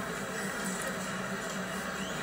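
A pause in speech: only a steady, quiet background hum and hiss (room tone).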